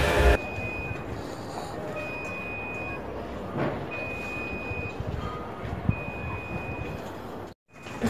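An electronic beeper sounding a high, steady tone in four beeps. Each lasts about a second, and a new one starts about every two seconds, over faint background noise. Loud music cuts off just after the start.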